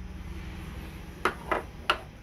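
Three short knocks, one after another in the second half, as a framed fabric speaker grille cover is handled and set down on a wooden table, over a steady low hum.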